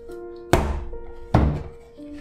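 Bread dough slapped down onto a wooden board while being kneaded by hand: two heavy thuds a little under a second apart.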